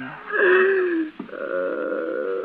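A woman's frightened, tearful moaning: a falling wail, then a trembling, wavering moan, with a brief sharp click between them.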